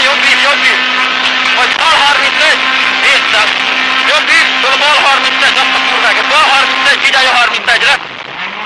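Rally car engine running at speed, heard inside the cabin, with a voice talking over it throughout; the engine note drops near the end.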